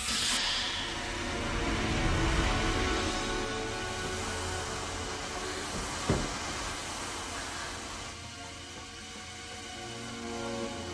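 A long hiss of pressurised gas rushing from cylinders through hoses, slowly dying away, over a film score. One sharp knock sounds about six seconds in.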